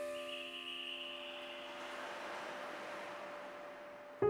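Gentle background piano music: a held chord slowly fading out over a faint hiss.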